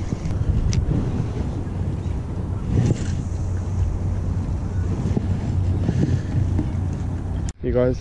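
Steady low drone of a harbour ferry's engine running close by, with wind buffeting the microphone and a couple of light clicks. The sound drops out for a moment near the end.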